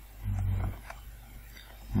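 A man's short, low closed-mouth "hmm", about half a second long, followed by a few faint computer keyboard key clicks as he types.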